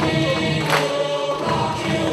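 Choir singing over a music track, with one sharp percussive hit a little under a second in.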